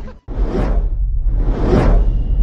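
A production-logo intro sting: two whoosh sound effects over a deep low rumble. Each whoosh swells and fades, the first about half a second in and the second about a second and a half in, just after a brief cut to silence at the start.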